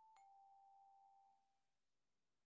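Faint glockenspiel notes ringing out: one note is still sounding as a slightly lower bar is tapped lightly, and both die away within about a second and a half.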